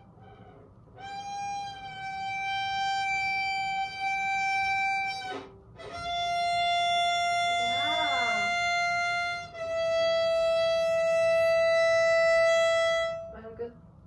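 Violin played by a beginner: three long, steady bowed notes, each held for about three to four seconds and each a little lower than the last. The notes come from fingers pressing down on the string, as intonation is being practised.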